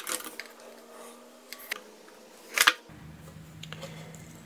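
Small clicks and taps from handling a micro limit switch and its wires with a screwdriver, with one sharper click about two and a half seconds in.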